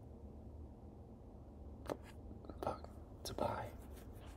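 Quiet room tone, with a few brief, faint murmurs under the breath in the second half.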